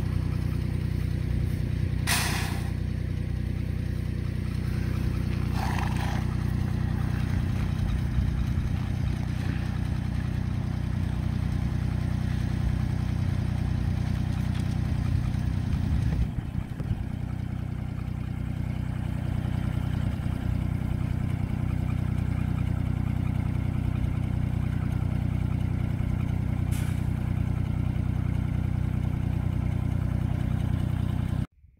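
A small tractor engine idling steadily. Three brief hissy or scraping sounds rise over it, about 2 s in, about 6 s in and near the end.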